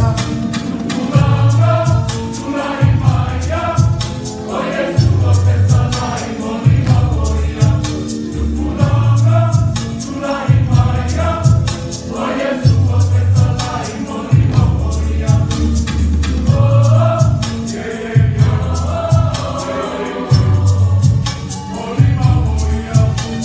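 A mixed group of adults and children singing a Samoan action song together, over a bass accompaniment that pulses about once a second in a steady beat.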